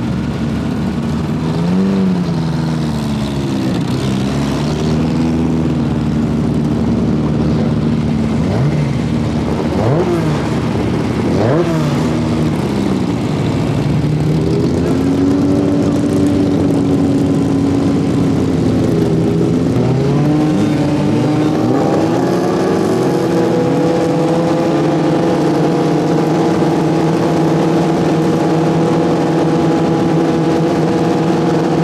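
Several folkrace cars' engines idling and revving up and down on the start grid. From about twenty seconds in, an engine settles into running at steady, raised revs.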